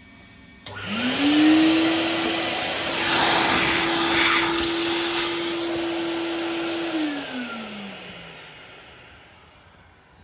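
Workshop vacuum cleaner switched on with a click, spinning up to a steady whine with a rushing hiss as it sucks metal swarf out of a freshly bored steel eccentric blank, then switched off and winding down near the end.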